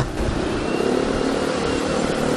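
Yamaha X-Ride motor scooter riding slowly in a traffic jam: a steady engine hum under even road and traffic noise.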